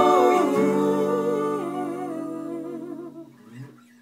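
Several voices holding a wordless hummed harmony, one upper voice wavering with vibrato, fading away over about three seconds to near quiet at the end.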